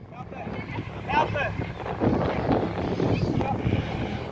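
Touch football players calling out at a distance, one brief shout about a second in, over a rushing noise on the microphone that grows louder about halfway through.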